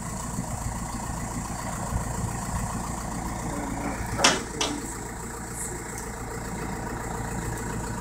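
Steady low rumble of an idling vehicle engine, with a brief sharp sound about four seconds in.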